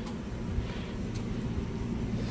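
Dodge Grand Caravan's 3.6-litre V6 idling steadily, warmed up after a thermostat replacement, with a faint click a little past a second in.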